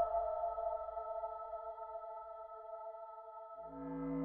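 Background music: a sustained ambient synth chord held steady, moving to a new, lower chord near the end.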